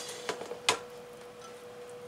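A few light clicks and knocks of a plastic colander against a frying pan while blended guajillo chile sauce is strained through it, the sharpest about two-thirds of a second in, over a steady faint hum.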